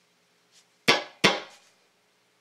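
Two sharp percussive hits on a Stratocaster-style electric guitar, about a third of a second apart, each dying away within a few tenths of a second.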